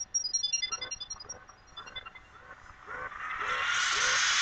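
Sci-fi film-trailer sound effects: rapid high electronic bleeps in falling runs that thin out over the first two seconds, then a rushing hiss of a spaceship taking off that swells from about three seconds in.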